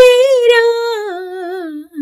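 A woman singing a Malayalam film song without accompaniment, holding one long note with vibrato that sinks lower toward the end.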